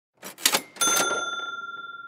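Intro sound effect: a few quick clicks, then a bright bell ding about a second in that rings on and slowly fades.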